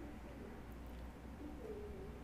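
Faint, repeated low cooing calls, each a short soft gliding note, over a steady low hum.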